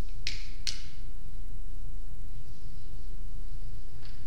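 Two sharp clicks about half a second apart, near the start, from a lighter's igniter as a candle is lit. A steady low hum runs underneath.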